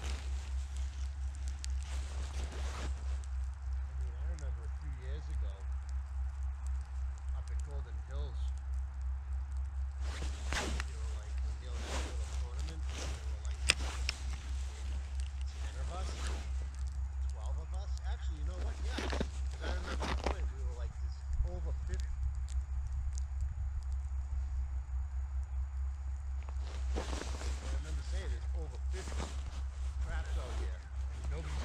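Steady low wind rumble on the microphone, with scattered rustles and knocks from clothing and an ice-fishing rod and reel being handled while jigging.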